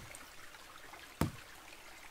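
A single sharp knock of a hand on a fallen tree log about a second in, over the steady trickle of a stream.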